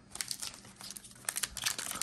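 Foil trading-card pack wrapper crinkling as it is picked up and handled to be torn open, a scatter of small crackles that grows busier about halfway through.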